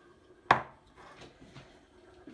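A metal tin set down on a hard kitchen worktop: one sharp knock about half a second in, followed by faint handling sounds.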